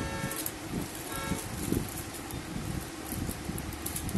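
Cellophane wrapping on gift boxes crinkling and rustling as they are handled, over steady background noise. A brief faint steady tone comes about a second in.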